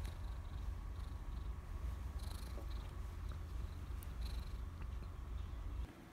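Seal-point cat purring, a steady low rumble that stops suddenly near the end.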